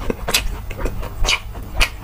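Close-miked chewing of sauce-glazed Korean fried chicken, the crisp coating crunching about three times.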